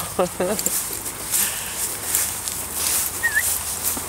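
A man laughs briefly at the start, then footsteps swish steadily through long pasture grass. A single short high chirp sounds near the end.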